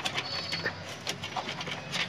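Scattered light clicks and taps of cables and plastic connectors being handled inside a metal desktop PC case.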